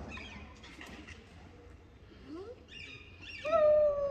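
A child's long, high-pitched squeal near the end, held on one pitch and sagging slightly, after a quiet stretch.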